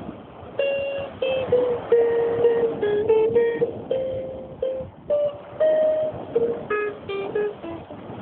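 Steel-string acoustic guitar played by hand: a melody of single plucked notes, with a few brief chords.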